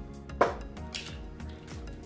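Metal measuring cups and spoons clinking as they are moved about on a wooden counter, with a sharp clink about half a second in. Faint background music underneath.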